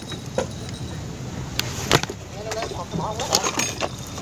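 A few sharp knocks and clatters of gear and a bamboo pole being handled against the wooden boat, over a low steady hum. Faint voices in the background near the middle.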